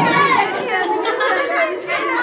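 Several people talking and calling out over each other.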